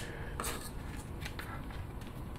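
Faint clicks and light rubbing from alligator-clip test leads and their wires being handled and clipped back on, a few separate small ticks over low room noise.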